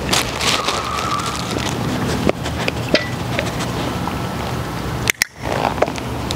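Steady outdoor background noise with a low hum and scattered small clicks, with a short dip and a couple of sharp clicks about five seconds in.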